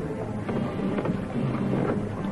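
Steady rushing, rumbling noise of a motorboat under way, on an old, hissy film soundtrack.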